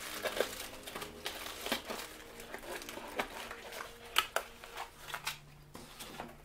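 Cardboard packaging and sealed plastic bags of cooler mounting parts being handled: crinkling plastic with light scrapes and taps of cardboard, and a couple of sharper clicks about four seconds in.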